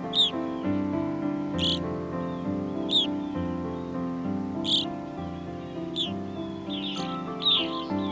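Evening grosbeak calls: six short, sharp notes about a second and a half apart, over slow instrumental music with held notes.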